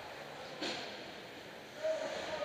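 Ice hockey rink ambience: skates on the ice and play noise in a large echoing arena, with a sharp scrape or stick sound about half a second in. A brief call of a voice comes near the end.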